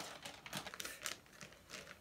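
Faint rustling of plastic packaging being handled, with a few short crackles.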